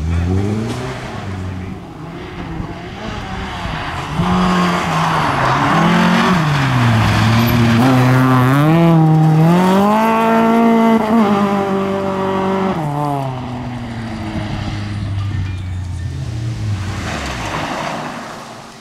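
Volvo rally cars driven hard on a gravel stage, engines revving up and down through the gears. The engine sound is loudest and highest about eight to eleven seconds in as a car powers out of a corner, then falls away. Tyres scrabble on loose gravel.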